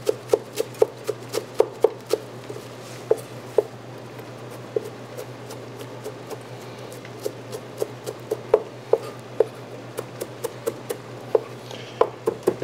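Chef's knife chopping flat-leaf parsley on a cutting board: quick, sharp strikes at about four a second. The strikes thin out midway, then pick up again.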